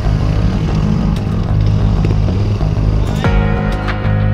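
Music soundtrack with a heavy, steady bass line and a few sharp percussive hits.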